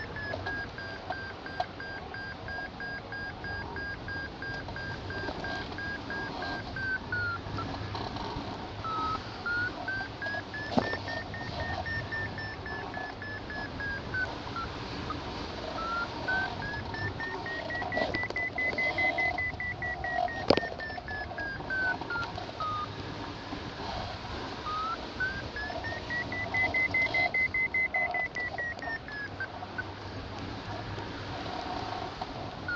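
Hang glider variometer beeping, holding one pitch at first and then rising and falling in three slow swells as the glider circles through a weak thermal; the higher-pitched stretches signal climb. Wind noise runs underneath, with two sharp clicks.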